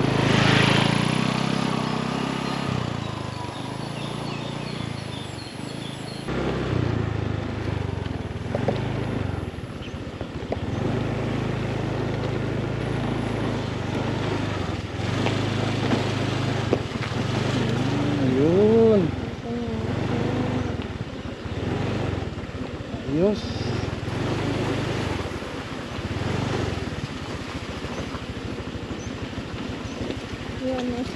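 Motorcycle engine, loudest at the start as the bike passes close by, then running steadily while it is ridden along a dirt and gravel track. A couple of brief, arching voice-like calls a little past halfway.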